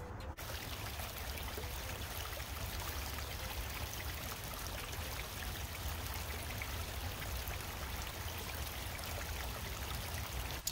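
River water flowing and rippling steadily past the bank, with a steady low rumble underneath.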